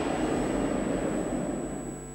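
Dense, low rumbling soundtrack noise fading out steadily over the two seconds.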